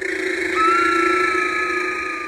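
A sustained electronic drone of several steady tones held together as a soundtrack effect. A higher tone joins about half a second in and sags slowly in pitch, and the whole drone fades toward the end.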